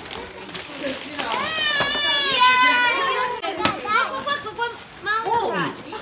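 A young child's long, high-pitched excited squeal about a second and a half in, with a shorter squeal near the end, over the crinkle of a plastic bag being pulled open.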